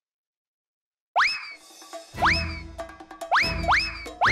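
Dead silence for about a second, then a comic music cue with cartoon boing effects: four sharp upward pitch swoops, the last two close together, over a low bass beat.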